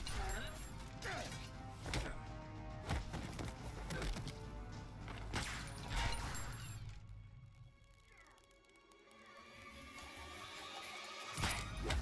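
Fight-scene soundtrack: music with repeated punch and impact sound effects, dying down about eight seconds in before swelling again near the end.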